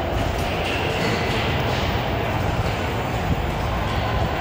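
Steady background din of a busy pinball arcade hall, the sounds of many machines and people blending into one even noise.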